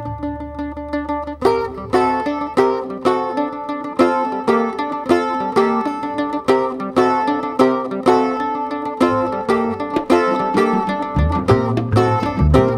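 Live instrumental Brazilian music: a bandolim (Brazilian mandolin) plays the melody in bright, quick plucked notes over double bass and drum kit. After a softer opening carried by low bass notes, the bandolim comes in strongly about a second and a half in.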